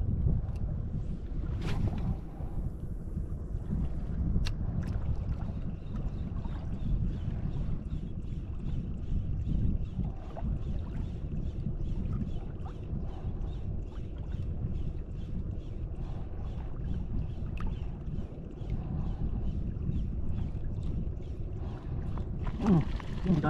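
Wind buffeting the microphone over water sloshing around a wading angler's legs on a shallow reef, a steady low rumble. From about five seconds in there is a faint, even ticking several times a second, with a couple of sharper clicks before it.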